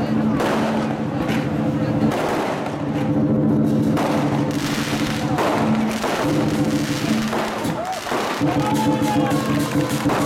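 Chinese lion dance percussion: a cart-mounted war drum beating fast, with cymbal crashes and gongs ringing in steady tones that break off and come back.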